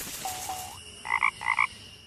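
Frog Box production-logo sting: a soft whoosh and two short gliding notes, then two quick double frog croaks.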